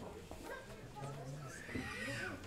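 Indistinct murmur of several people talking, with a short high-pitched squealing voice rising and falling near the end.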